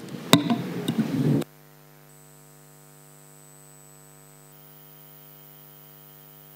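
Brief room noise with a sharp knock, cut off suddenly about a second and a half in. A faint, steady electrical hum with several even tones follows.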